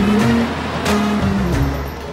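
A jeep's engine running as it pulls away, mixed with background film music.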